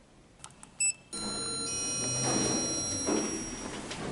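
Hotel elevator arriving: a short electronic beep, then a chime-like tone that rings on and fades over about two seconds above a steady noise.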